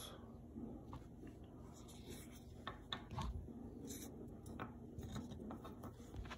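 Faint scattered light clicks and rubbing: small handling sounds at a workbench.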